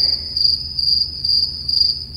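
Cricket chirping: a steady high-pitched trill that pulses a few times a second.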